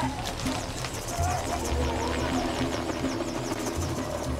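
Background music: sustained low drone tones with a high, repeating sweep about four times a second over them.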